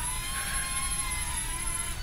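Millennium Falcon toy quadcopter drone in flight, its propellers giving a steady whine that wavers slightly in pitch.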